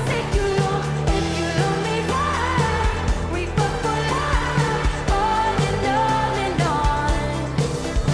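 A live pop band playing an electropop song with a steady beat and bass under sung vocals.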